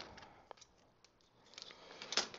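Faint snips and clicks of scissors cutting a strip of double-sided tape: a few light clicks at the start and a few more toward the end, nearly silent in between.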